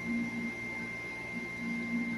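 A faint steady high-pitched whine, one unchanging tone, with two short low hums, one at the start and one near the end.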